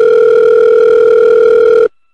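A telephone ringback tone: one steady electronic beep about two seconds long, heard on the line while a call rings through, cutting off sharply.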